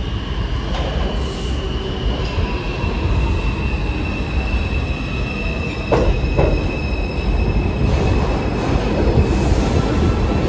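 R142 subway train pulling into the station and braking to a stop, with a steady high-pitched wheel and brake squeal over the rumble. There are two sharp clunks about six seconds in.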